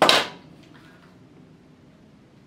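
A sharp clack as a slim card wallet is handled, dying away within half a second, followed by faint handling sounds.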